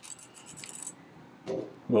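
Light clicks and faint rustling of small plastic pump-tubing parts and their plastic packaging being handled and set down on a countertop.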